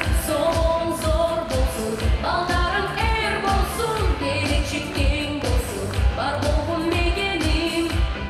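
Kyrgyz pop song performed with a woman singing lead over a steady kick-drum beat of about two beats a second.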